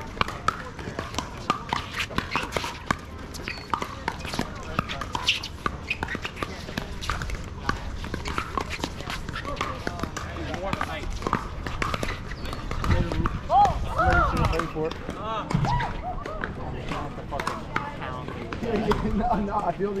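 Pickleball paddles striking the plastic ball, many short sharp pops, some from this rally and others from neighbouring courts, over steady background chatter of voices.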